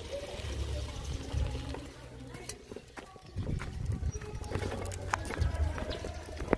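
Bicycle riding over a bumpy dirt road: a low, uneven rumble of wind on the microphone, with scattered clicks and knocks as the handlebars and frame jolt. The rumble drops off around the middle and returns.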